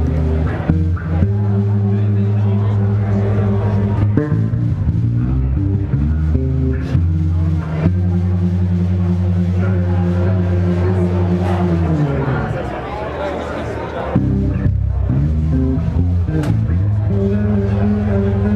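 A live jazz piano trio plays: electric bass, stage piano and drum kit. The bass holds long, deep notes, with cymbal and drum strikes scattered over them. About twelve seconds in, the held low notes slide down in pitch and the music thins briefly before the full band comes back in.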